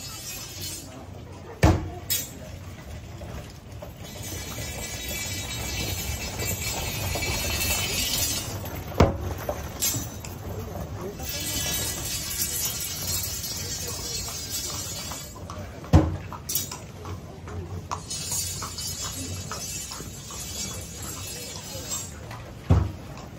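Onlookers' voices and street bustle as a festival procession passes, with three loud, sharp strikes at roughly seven-second intervals.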